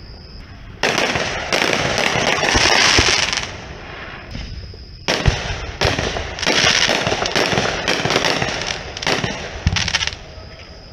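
Aerial fireworks bursting in two volleys. The first comes about a second in: sharp reports, then a dense run of pops for a couple of seconds. The second starts about five seconds in and runs for several seconds, with more reports and pops before it dies away.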